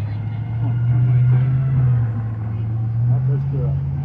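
A school bus's engine running on the nearby road, a loud low drone that swells in the middle and steps up in pitch about three seconds in as it pulls away.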